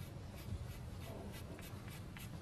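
Quiet room tone with faint scratchy rustling and a few light ticks and clicks.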